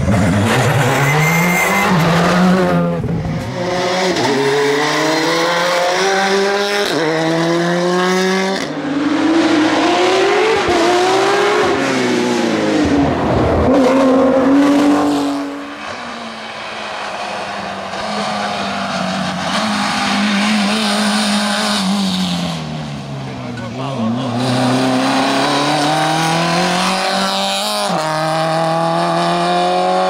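Rally cars driven hard on a tarmac stage, first a Škoda rally car and then a Peugeot 106. The engines rev up through the gears, with the pitch dropping sharply at each shift. In a quieter middle stretch an engine winds down for a bend and then pulls away, revving up again, with some tyre squeal.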